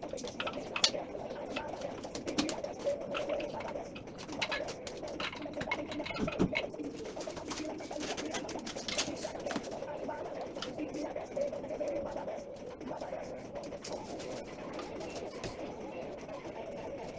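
Many quick clicks, crackles and rustles of furniture parts and their foam and plastic wrapping being handled on a floor, over a low wavering sound in the background.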